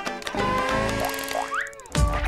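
Playful jingle music with cartoon sound effects: a few quick rising glides in the second half, the last one climbing highest, then a short dip in sound at the very end.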